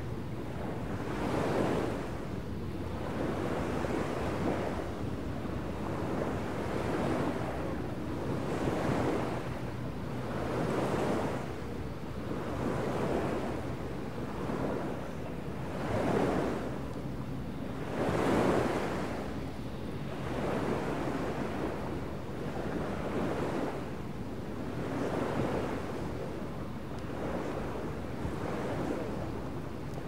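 Field recording of small waves washing in, swelling and falling back about every two seconds, over a faint low steady hum.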